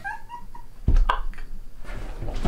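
A man and a woman laughing: high, squeaky giggles at first, then louder breathy bursts of laughter about a second in.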